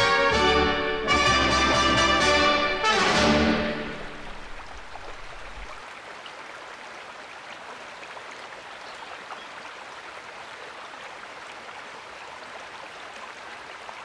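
An orchestra with prominent brass plays the closing bars of a piece and stops on a final chord about three and a half seconds in. After that there is only the steady rush of falling water from a waterfall.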